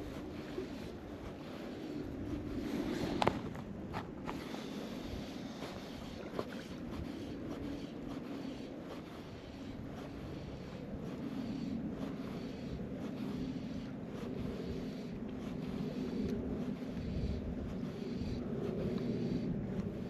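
Wind on the microphone over choppy loch water: a steady rushing that swells and eases, with two sharp clicks about three and four seconds in.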